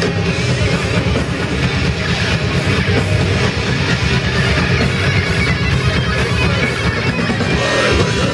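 Death metal band playing live: heavily distorted electric guitars and bass over a drum kit, loud and dense throughout.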